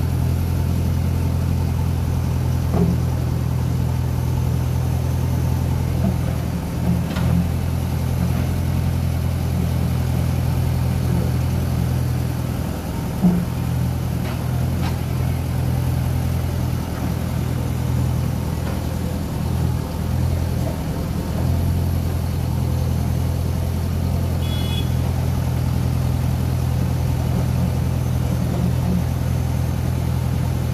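Diesel engine of a JCB backhoe loader running steadily while it digs a trench. A single sharp knock sounds about halfway through.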